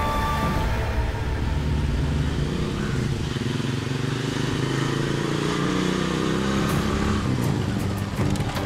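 Motorcycle engine running as the bike rides along, its note rising and falling a little.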